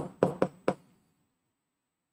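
Pen tip tapping against an interactive display board: four quick, sharp taps in the first second as short strokes are written on the screen.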